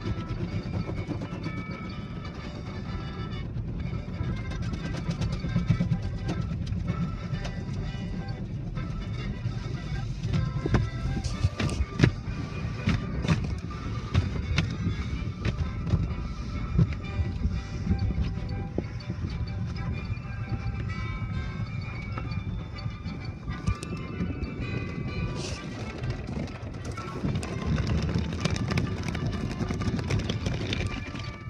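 Automatic tunnel car wash heard from inside the car: a steady low rumble of the wash machinery with brushes and water hitting the car, and scattered sharp knocks in the middle and near the end. Music plays underneath throughout.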